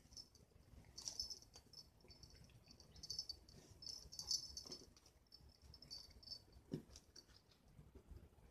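Faint, intermittent high-pitched rustling and crackling as a cat bites and kicks at a plush toy on a doormat, with one brief low sound near the end.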